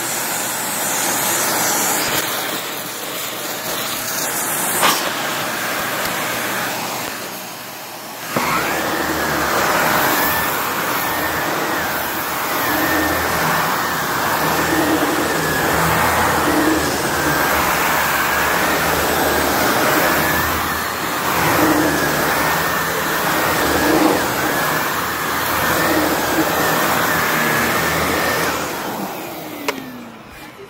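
Upright vacuum cleaner running over carpet, at first sucking through its hose attachment with a hiss. About eight seconds in the sound changes sharply to a fuller motor hum with a high whine. From then on it swells and falls every one and a half to two seconds as the cleaner is pushed back and forth.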